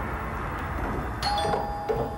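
Electric doorbell chiming a two-note ding-dong, higher note then lower, about a second in, the notes ringing on.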